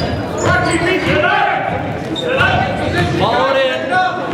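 Basketball game sounds in a large, echoing gym: a ball bouncing on the hardwood floor, with players and spectators shouting.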